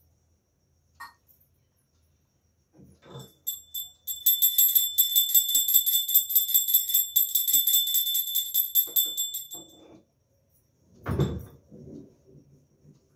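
A small hand bell, as rung in puja, shaken rapidly and steadily for about six seconds with a bright, high ring, then stopped. A single low thump follows near the end.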